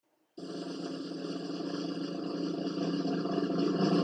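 A drum roll building steadily louder, starting sharply out of silence about half a second in: a build-up leading into a cymbal crash.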